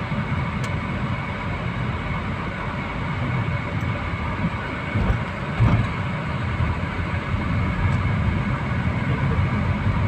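Car cabin noise while driving: a steady rumble of engine and tyres on the road. A couple of low thumps come a little past halfway.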